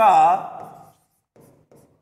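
Stylus pen writing on the glass of an interactive display screen: a few faint, short scratching strokes about a second and a half in.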